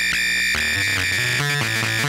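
Modular synthesizer tones run through a Doepfer A106-1 Xtreme lowpass/highpass filter while its high-pass level is turned up against the low-pass, dialling in a pseudo bandpass: the bass drops off and a thin, steady band of upper tones comes through.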